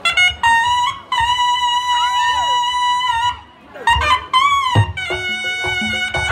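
Sundanese tarompet (double-reed shawm) playing a nasal, reedy melody of long held notes, with a short break just past three seconds in. Low drum beats join in from about four seconds in.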